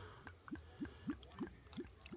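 Ginger beer poured from a bottle into a glass of ice, glugging with short rising gurgles about three times a second as air bubbles back into the bottle.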